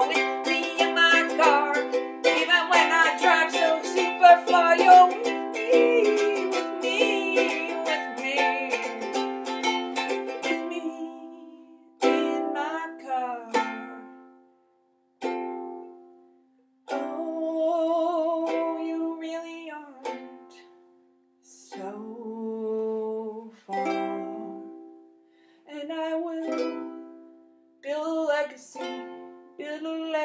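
Ukulele strummed steadily for about the first eleven seconds. After that, single chords are struck one at a time and left to ring out and fade, with short gaps of silence between them, like closing chords.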